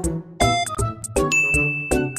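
Cheerful background music with a steady beat. A bell-like ding starts a little past halfway and holds as one long ringing tone.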